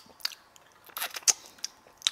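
Mouth sounds of someone eating a sugar-crusted Gummy Chell jelly candy: irregular small clicks and crunches of the crisp sugar coating, with a brief cluster about a second in.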